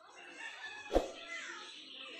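A rooster crowing, a drawn-out call with falling pitch, with one sharp knock about a second in.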